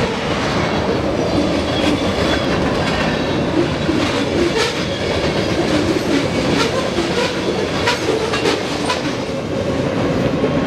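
Freight train of tank cars and covered hoppers rolling past at speed: a steady rumble of steel wheels on rail, with the clickety-clack of wheels over rail joints.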